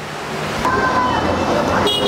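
Street traffic noise that swells up over the first half second into a steady roar of the road. A short steady tone, typical of a car horn, sounds near the middle.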